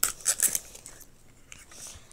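Crinkly printed plastic wrapper being peeled and torn off a Toy Mini Brands capsule ball: a few sharp crackles in the first half second, then softer rustling.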